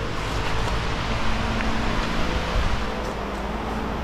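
Steady workshop background noise: a continuous hiss with a low, even hum under it, with no distinct events.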